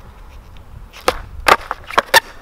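Skateboard clacking on concrete during a flip-trick attempt: sharp knocks about a second in, again half a second later and once more near the end, over a low rumble.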